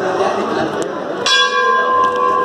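A temple bell is struck once about a second in and rings on with several steady, overlapping tones, over the chatter of a crowd.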